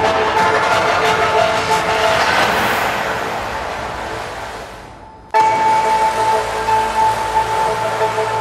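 Music of long, steadily held notes at several pitches. Between about two and five seconds in it fades away under a rush of noise, then cuts back in suddenly.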